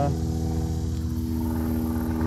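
A small engine running steadily, a level hum that holds one pitch with several overtones and never rises or falls.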